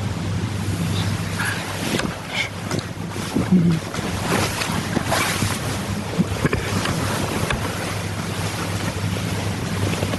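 Steady hiss of a bedroom microphone with a low hum, and a few soft rustles and clicks of bedclothes between about two and six seconds in.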